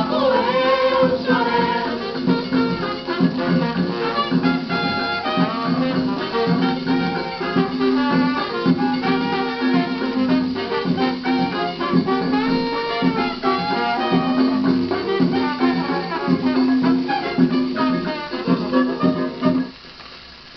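A 1950 shellac 78 rpm samba record playing on a turntable: a regional (choro-style) ensemble accompanying a singer, with the sound cut off above the treble of the old recording. The music stops abruptly near the end, leaving only a much quieter background.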